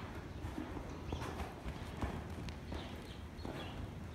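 Horse's hooves on the sand footing of an arena: a few soft, irregular hoofbeats as the horse slows to a walk.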